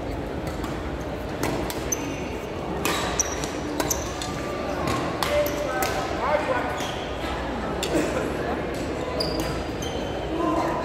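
Badminton rally: racket strings repeatedly striking a shuttlecock in quick exchanges, with short sneaker squeaks on the court floor, echoing in a large hall. Background voices run underneath.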